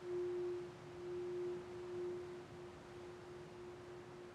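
Hand-held metal singing bowl sung by rubbing a wooden stick around its rim: one steady tone that swells and dips in loudness, growing fainter in the second half.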